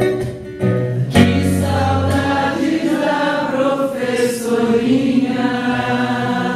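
A man singing a slow song live, accompanying himself on acoustic guitar; the strumming drops back briefly about half a second in, then comes back with a strong strum and a long held sung line.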